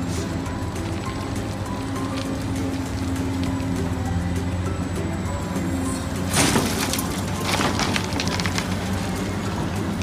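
Background music over the running of a large Caterpillar hydraulic excavator. A loud crunching rush of dirt and rock comes about six and a half seconds in, followed by smaller crackles.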